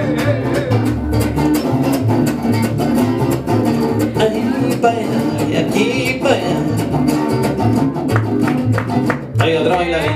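A live mariachi band playing a lively dance number: strummed guitars keep a steady rhythm over a pulsing bass line.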